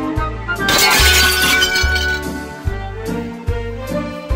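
Background music with a steady deep beat; just under a second in, a crash of breaking glass cuts over it, its glittering tail dying away over about a second.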